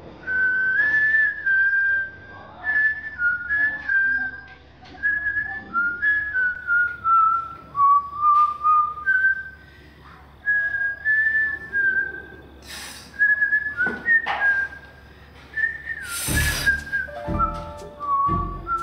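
A woman whistling a tune through pursed lips, in short phrases of a single wavering pitch. About two seconds before the end there is a sudden loud noise, and background music with low bass notes comes in.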